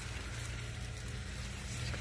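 Faint steady background hum with a low even hiss and no distinct sound event.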